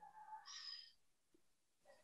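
Near silence in a pause of a video call, with one faint, short sound in the first second.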